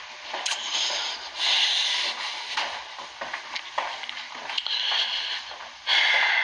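Rustling handling noise from a handheld camera being carried while walking, in uneven swells with a few soft knocks.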